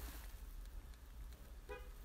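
Low steady hum with a single short, faint dog bark near the end.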